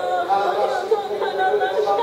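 Indistinct chatter of several people talking at once in a large room, no words clear.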